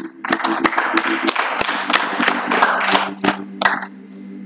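Congregation clapping their hands in praise, a quick patter of claps that dies away near the end. Under it a keyboard holds a steady low chord.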